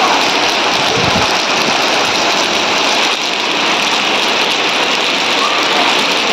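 Steady downpour of rain pattering on a wet concrete courtyard and its puddles, an even, unbroken hiss.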